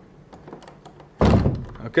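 A hinged room door pushed shut, landing with one thunk about a second in, after a few light clicks of hand contact.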